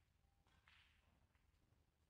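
Near silence: hushed arena room tone with a low steady hum, and one faint, brief hiss about half a second in.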